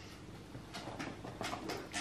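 Faint chewing: a man eating a soft doughnut-bun burger, with a few soft wet mouth clicks in the second half.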